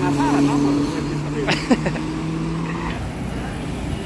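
Road traffic with a steady engine hum. A short laugh comes about a second in.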